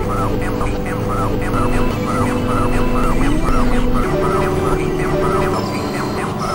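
Experimental synthesizer drone: sustained low tones under a pulsing tone that repeats about twice a second. About three seconds in, one tone glides briefly upward, and the held chord shifts a second later.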